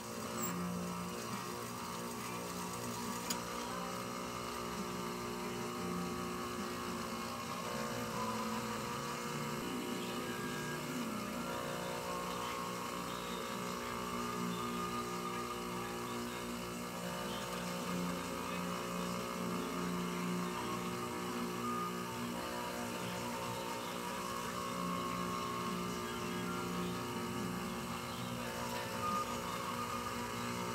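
Sewing machine with an electric motor humming steadily while fabric is stitched, its lower tone strengthening and easing off in spells.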